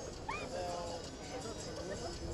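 Indistinct distant voices over a steady outdoor background. About a third of a second in comes a short, high rising yelp-like call, followed by a brief held tone.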